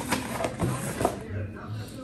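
Cardboard and paper rustling, with a few light knocks, as a hand rummages inside an open cardboard shipping box; it dies down in the second half.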